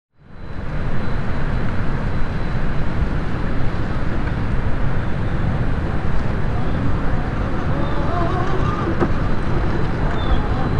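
Steady low rumbling outdoor noise that fades in at the start, with the faint whine of an RC4WD Trail Finder 2 scale crawler's electric motor and gears rising and falling in pitch near the end as it crawls over rock.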